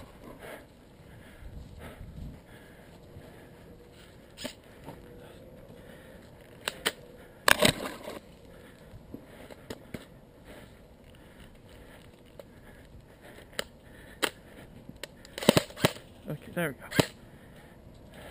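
Scattered sharp clicks and snaps from a jammed airsoft rifle being worked by hand, the loudest about seven and a half seconds in and a quick cluster near the end.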